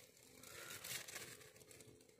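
Near silence: faint outdoor background with light rustling, and one brief slightly louder rustle about a second in.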